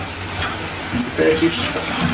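Chicken pieces frying in a pan, a steady sizzle.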